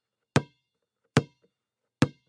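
Three sharp knocks, each with a short ringing tail, evenly spaced about 0.8 s apart like a count-in to the sung jingle that follows.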